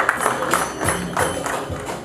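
Background music with a quick percussive beat.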